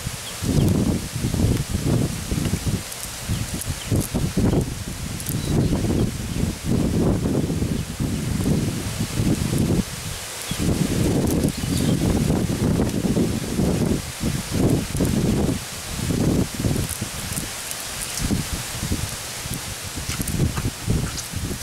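A nylon fishing net rustling and dragging on mud as it is handled by hand, over an uneven low rumble that swells and fades throughout.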